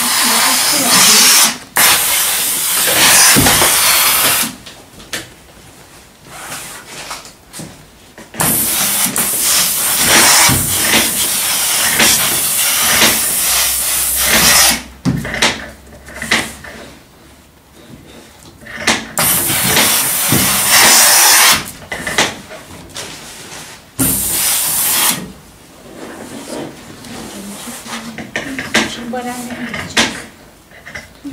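Steam iron letting out repeated loud bursts of steam hiss while pressing and shaping a fabric bodice, each burst lasting from about a second to six seconds, the longest near the middle, with quieter handling gaps between.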